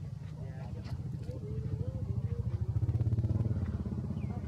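Steady low engine rumble, swelling to its loudest about three seconds in and then easing slightly. A faint wavering voice sounds over it in the middle.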